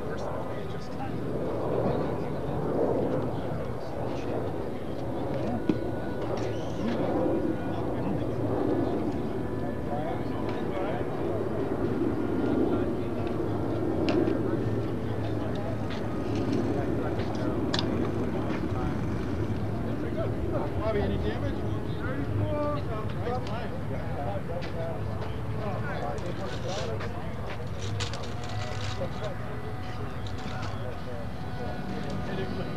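Faint, steady tone of a radio-controlled model airplane's engine running in flight, its pitch drifting slowly, under the background chatter of people talking.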